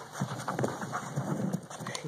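A large dog's paws and claws scuffling and tapping irregularly on a rubber-matted floor as it shuffles and moves about during training.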